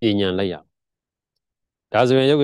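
A man's voice speaking a short phrase, then dead silence for over a second until he starts speaking again at the very end.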